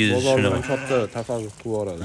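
Sheep bleating in a flock.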